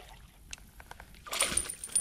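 A hooked fish being lifted from the river and swung into an aluminum boat: a few faint ticks, then a louder splash and rattle in the last moments as it comes aboard.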